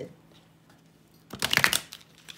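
A tarot deck being shuffled by hand: a quick flutter of cards about a second and a half in, lasting about half a second.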